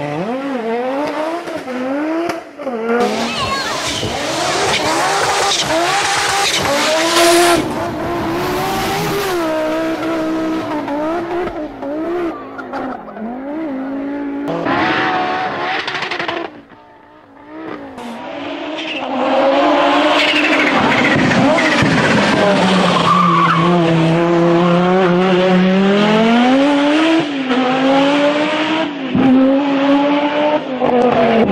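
Audi Sport quattro S1 rally car's turbocharged five-cylinder engine, revved hard and rising and falling in pitch through repeated gear changes. It drops out briefly about halfway, then holds a long high-revving sweep.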